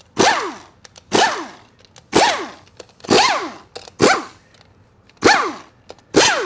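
Pneumatic impact wrench run in six short bursts about a second apart, each ending in a falling whine as the air motor spins down. It is running out the bell housing bolts on a TH400 automatic transmission.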